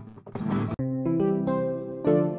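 Acoustic guitar being strummed, cut off abruptly under a second in and replaced by a clean melody of single sustained notes.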